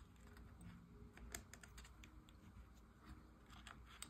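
Near silence with faint, irregular light clicks of metal tweezers handling small die-cut paper petals, one slightly louder click about a third of the way in.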